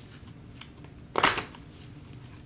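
A tarot deck being shuffled by hand: faint light card sounds, with one louder, short shuffle a little past a second in.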